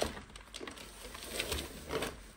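An upside-down plastic robot vacuum being turned around by hand on a sheet of brown paper: the body scrapes over the paper, which crinkles, with a few small knocks.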